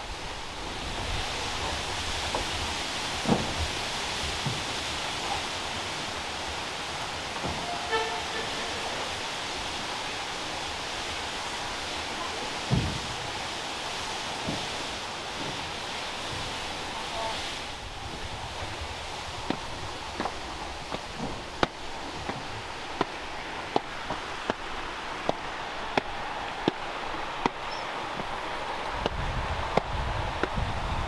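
Footsteps climbing stone stairs, a little more than one step a second, in the second half, over a steady rushing noise that eases off about halfway through.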